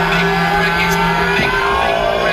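Electronic dance music over a large festival sound system: a held bass note under a slowly rising synth sweep, like a build-up. The bass note stops about one and a half seconds in.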